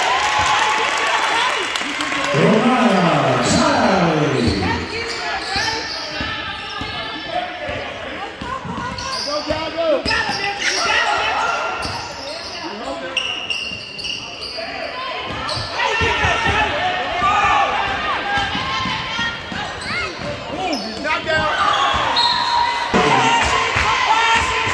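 A basketball bouncing on a hardwood gym floor during a game, mixed with voices from players and spectators in a school gymnasium.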